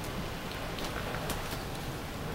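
Steady hiss of heavy thunderstorm rain heard from inside the house, with a few faint clicks.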